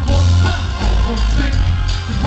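Live band music with singing: a marching drumline on snare drums over heavy bass, with horns and vocals, at full concert volume.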